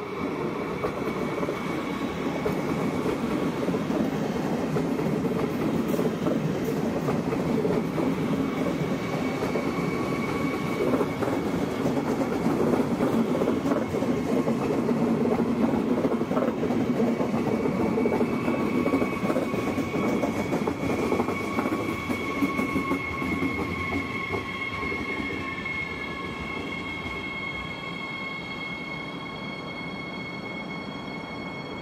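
Siemens Desiro HC electric multiple unit rolling past at low speed into the station: steady rolling and wheel noise that swells as it passes close and eases off toward the end. A thin high whine runs over it, with several high tones showing near the end.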